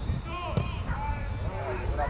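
A football kicked once, a single sharp thud about half a second in, amid shouting voices of players and spectators.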